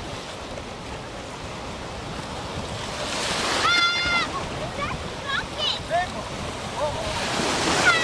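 Ocean surf washing in shallow water, a steady wash that swells twice as waves come in, with short high-pitched calls over it.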